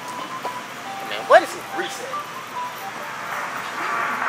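Shop-floor ambience: a steady background hiss with faint, tinny background music and snatches of indistinct voices. A short rising sound about a third of the way in is the loudest moment.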